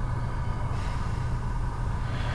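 Steady low mechanical hum of the hall's room noise, with one brief soft hiss just under a second in.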